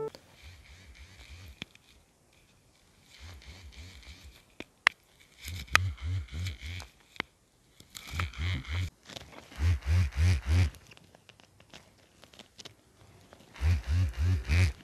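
Small vibration motor on a wrist-worn Arduino face-touch alarm buzzing in rapid pulses, about four or five a second, in roughly one-second bursts, six times over. Each burst is the alert going off as the hand comes within 25 cm of the face.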